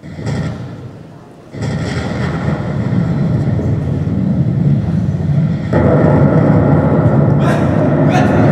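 A thud, then a loud rumbling noise that starts suddenly about a second and a half in and grows louder again near six seconds.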